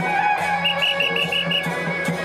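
Traditional temple procession music: a shrill wind-instrument melody held over a steady pulsing low note, with a run of about six quick repeated high notes in the middle.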